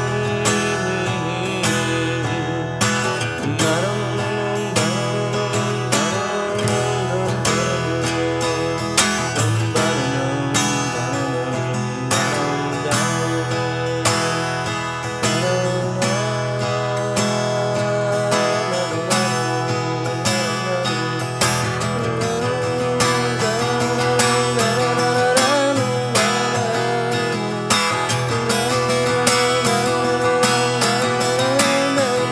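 Music: an instrumental stretch of an acoustic blues-rock song, with acoustic guitar strummed in a steady rhythm under a melody line that bends and wavers in pitch.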